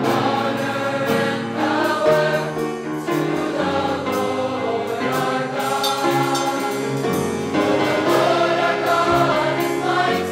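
A choir singing, accompanied by a drum kit played with sticks that keeps a steady beat of drum and cymbal strokes under sustained low accompanying notes.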